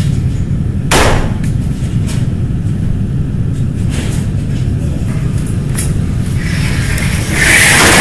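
Low, steady rumbling drone with a single sharp hit about a second in and a louder noisy swell building near the end, as in a dark cinematic intro before the song starts.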